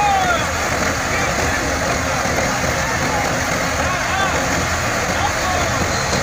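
Tractor-driven grain thresher running steadily while dry crop bundles are fed into its drum: a dense, even rush of straw and grain over the New Holland tractor's diesel engine working under load.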